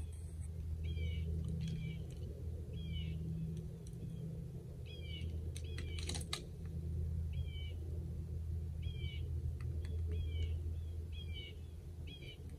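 A bird calling over and over, a short two-part note roughly once a second, over a steady low hum; a brief sharp click about six seconds in.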